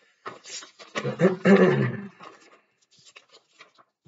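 A man's voice mumbling or murmuring without clear words for about two seconds, then faint light ticks and scratches, like a pen on paper.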